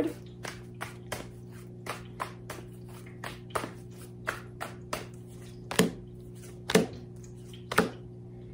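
Tarot cards being shuffled by hand: a string of soft card taps and flicks, about two to three a second, with a few louder snaps near the end, over a steady low hum.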